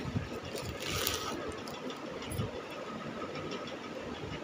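Plastic parcel bag crinkling and rustling as it is handled and opened, loudest about a second in.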